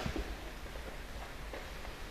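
Quiet steady background hiss with a low rumble, and a couple of faint knocks, one at the start and one near the end.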